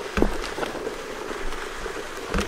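Footsteps of metal-spiked golf shoes on frozen, frost-covered grass, with a single knock just after the start.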